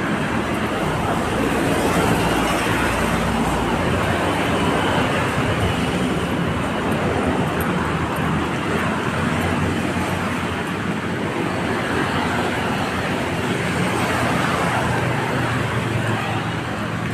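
Steady road traffic noise, a continuous wash of passing vehicles without distinct events.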